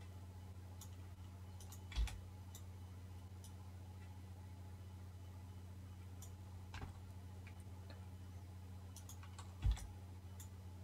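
Sparse computer mouse and keyboard clicks over a steady low electrical hum, with the loudest clicks about two seconds in and just before the end.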